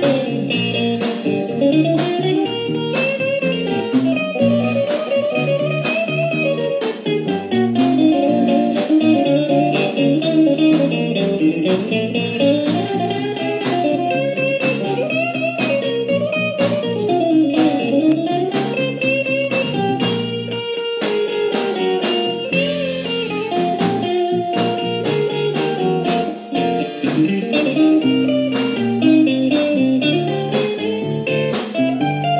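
Live blues-funk band playing: a guitar leads with a melody full of bent, sliding notes over keyboard chords and a steady drum beat.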